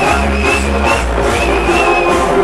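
Loud electronic dance music from a DJ set playing over a nightclub sound system, with a heavy, steady bass and a high melody line that wavers up and down.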